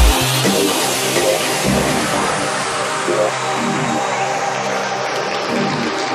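Tech house music in a breakdown: the steady kick drum stops just after the start, leaving short bass and chord stabs under a noise sweep that slowly falls in pitch.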